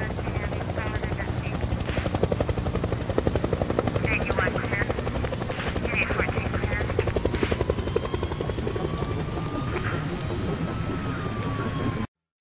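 Helicopter rotor beating fast and steadily, with short bursts of indistinct voices over it. A thin tone slowly rises through the second half and falls away near the end.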